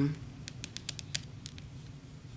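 Fingers handling tarot cards on a table: a quick series of about seven light, sharp ticks in the first second and a half, then quiet room tone.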